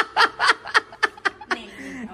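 Breathy, snickering laughter in quick pulses, about four a second, that stops about a second and a half in.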